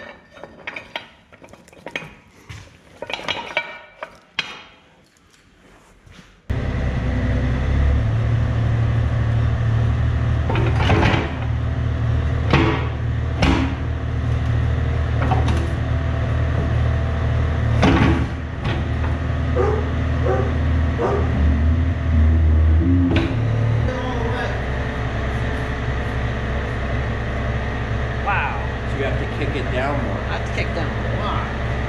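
Light metal clinks from hand work on the excavator coupler's pins for the first few seconds. Then, about six seconds in, the Yanmar B37 excavator's diesel engine cuts in, running steadily, with a few sharp metal knocks over it.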